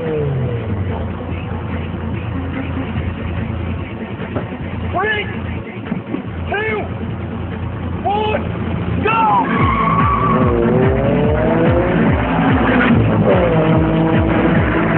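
Car engines revving at a street-race start, blipped up and back down several times about a second and a half apart. From around halfway through, the cars accelerate away hard and the sound gets louder.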